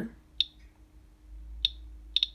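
Radalert 50 Geiger counter's audible count clicks: two sharp single clicks about a second and a quarter apart, each one a detected radiation count. They come from a uranium glass bead held against the detector, which is only weakly radioactive, near normal background level.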